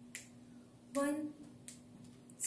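Two soft finger snaps, about 1.5 s apart, keeping time for a band's count-in, with a single counted word spoken between them. A faint steady hum runs underneath.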